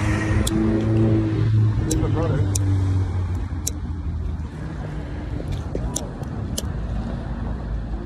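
A motor vehicle's engine running nearby with a steady low hum that fades after about four seconds, over outdoor background noise, with a few sharp clicks from the phone being handled.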